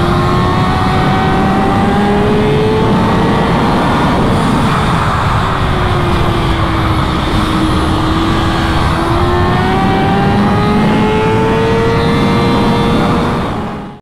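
Kawasaki ZX-6R inline-four sport bike engine running hard at high revs, heard onboard under heavy wind rush. Its pitch climbs over the first few seconds, dips through the middle, then climbs again, and the sound fades out at the very end.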